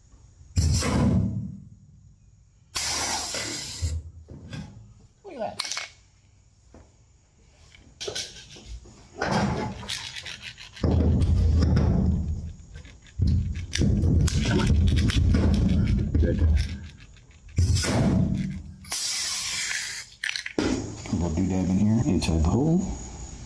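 Pneumatic air rivet gun setting aluminium pop rivets in a jon boat hull: repeated bursts of air hiss and mechanical noise as it cycles, some about a second long, with longer heavier stretches in the middle.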